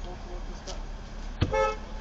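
A car horn gives one short toot about one and a half seconds in, lasting about a third of a second, over the low steady hum of a car idling in stopped traffic.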